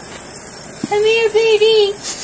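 A person calling a dog in a high, sing-song voice: about a second in come three short, level-pitched notes in a row, like a coaxing "come here" call.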